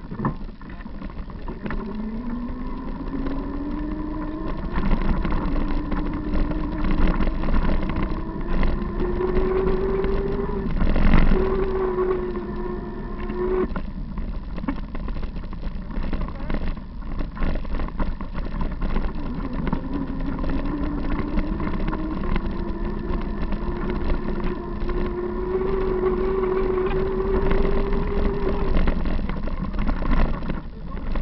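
A bicycle riding along a bumpy forest dirt trail, with rumble, wind and rattling jolts from the ride. A steady whine climbs slowly in pitch twice: once until it cuts off suddenly about thirteen seconds in, and again near the end.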